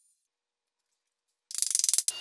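Silence, then near the end a sudden half-second run of rapid, evenly spaced clicks, about 25 a second.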